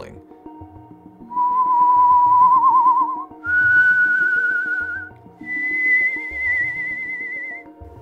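A man whistling three nearly pure tones in rising steps, each held for about two seconds and wavering slightly toward its end.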